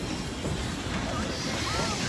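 Passenger coaches of a steam-hauled train rolling past close by: a steady noise of wheels running on the rails.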